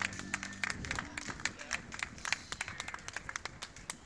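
Scattered applause from a small street audience, hands clapping irregularly, as the band's last low held note dies away about a second in.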